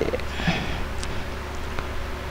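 A short sniff or breath close to the microphone about half a second in, over a steady low electrical hum, with a couple of faint clicks.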